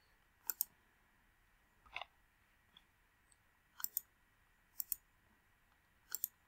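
Computer mouse button clicks, each a quick press-and-release pair, three pairs in all, with a softer single tick about two seconds in.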